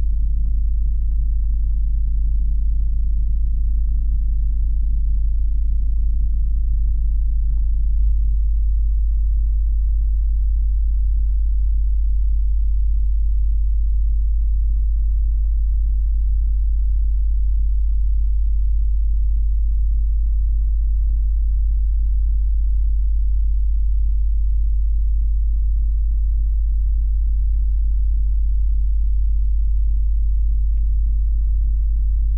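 Deep, steady low drone. About eight seconds in, its upper rumble drops away, leaving a narrower, even low hum.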